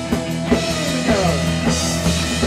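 Rock band playing, with electric guitar and a drum kit keeping a steady beat. About a second in, a run of guitar notes slides downward in pitch.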